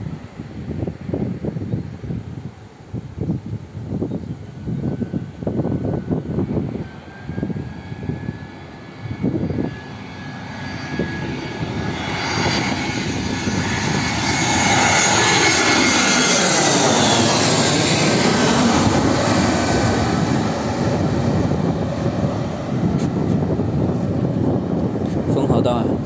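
Wind buffets the microphone in gusts. Then a twin-engine jet airliner on final approach grows steadily louder and passes low overhead, its engine noise peaking a little past the middle, with a whine that falls in pitch as it goes by and a roar that carries on as it moves away.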